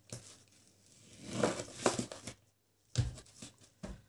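Kitchen knife slicing through a slab of raw pork fat (salo), a rough scraping and cutting sound about a second in, followed by two short dull knocks on the cutting board near the end.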